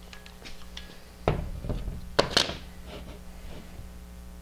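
Metal TV mount adapter plate handled and set against drywall: a dull thud about a second in, then two sharp knocks close together about a second later.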